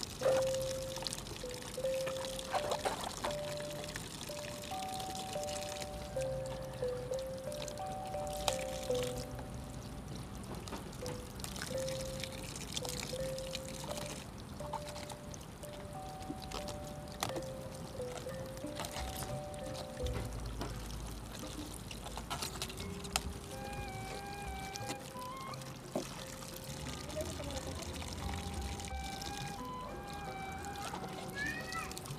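Water pouring steadily from a bamboo spout and splashing over a cabbage head as it is rinsed by hand, under soft background music with a slow, simple melody.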